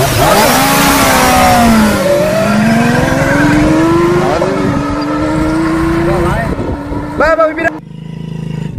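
Hero Honda motorcycle engine pulling away under the load of three riders: its pitch dips once about two seconds in, then climbs steadily as it accelerates. Voices shout over it near the end.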